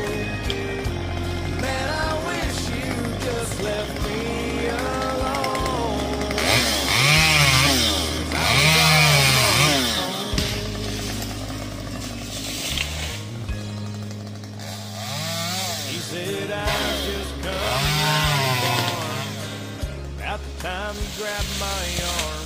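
Chainsaw cutting limbs from a cottonwood tree, its engine revving up and falling back in bursts, loudest about a third of the way in and again near three quarters, over country music playing without vocals.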